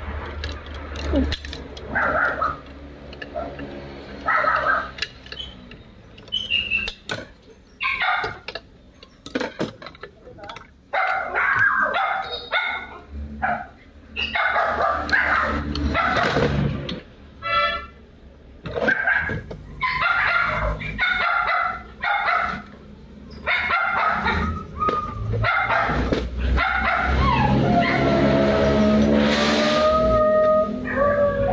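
Scattered metal clinks and knocks from hands working parts inside an opened automatic transmission case, with voices and animal calls in the background.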